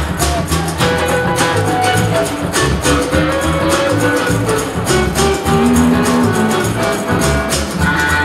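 A cigar box guitar and drums playing an up-tempo instrumental. The drummer plays a homemade kit of tin-can drums with sticks, keeping a steady beat under the guitar's plucked notes.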